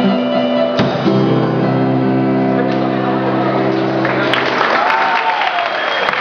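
Live band of acoustic guitar, keyboard and drums holding a final chord, with one hit a little under a second in; the chord rings and stops about four seconds in, giving way to crowd noise and voices in a large hall.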